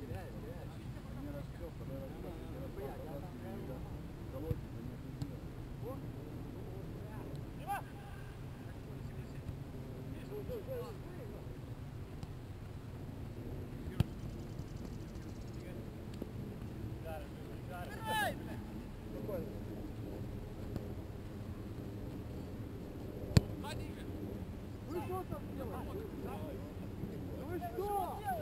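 Players shouting across an open soccer field over a steady low background rumble, with a loud call about two-thirds of the way in. Two sharp thuds of a soccer ball being kicked stand out, the louder one near the end.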